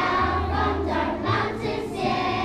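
Children's choir singing together, with held low notes of an instrumental accompaniment underneath.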